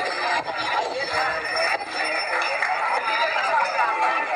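Indistinct voices talking without a break.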